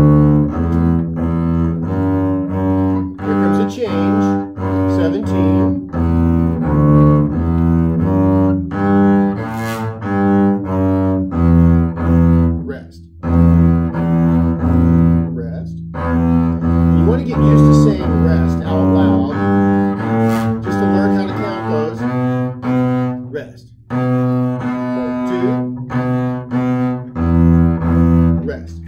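Double bass played with the bow, a slow line of separate quarter and half notes in D major, each note held steady. There are two brief rests partway through.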